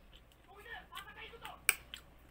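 A metal fork and spoon clink sharply against a plate twice in quick succession near the end.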